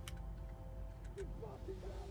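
Low, steady rumble of a car's interior, with a soft held chord of film score over it and a couple of faint clicks.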